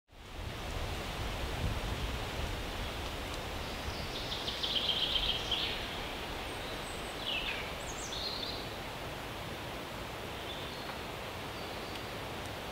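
Forest ambience: a steady rustling hiss of leaves and air with bird calls over it, a trilling call about four seconds in and a few short chirps a couple of seconds later. The sound fades in at the start.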